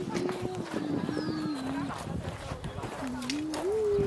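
A voice humming or singing a wordless tune in long held notes that step down and then back up, with scattered footsteps on a wood-chip path.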